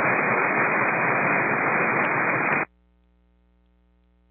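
Air traffic control radio receiver hissing with static on an open channel for about two and a half seconds. The hiss cuts off suddenly as the squelch closes, leaving a faint hum.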